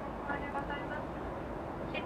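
Steady cabin noise of a Boeing 777-300ER airliner in cruise, with a faint murmuring voice twice over it.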